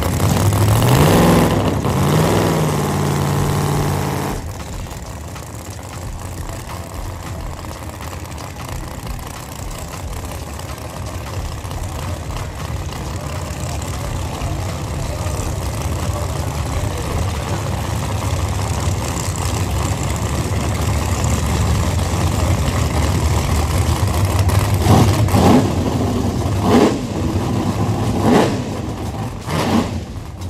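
Drag race car engines: one revs up and holds high for a few seconds, then cuts off suddenly. A steady low engine rumble follows and slowly grows louder, with three quick throttle blips near the end.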